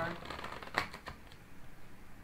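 A tarot deck being shuffled by hand: a quick run of fine ticks in the first half second, then two sharper card snaps about a second in, followed by quieter rustling of the cards.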